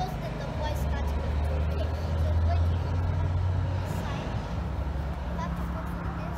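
Low engine rumble of a passing vehicle, swelling about half a second in and fading out by about four seconds.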